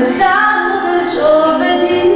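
A woman singing a slow melody with acoustic guitar accompaniment, heard live on stage.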